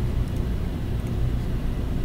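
Steady low hum and background noise with no speech, and a couple of faint clicks.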